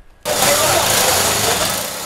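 Outdoor street noise with a motor vehicle's engine running, cutting in suddenly about a quarter second in and holding steady and loud.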